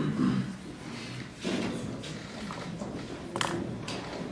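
Lecture-hall background during a pause: faint, indistinct voices and movement of people in the room, with a couple of short sharp knocks near the end.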